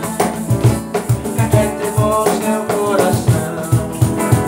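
Acoustic guitar and cajón playing together: guitar notes and chords over a steady beat of low cajón bass strikes, a few per second.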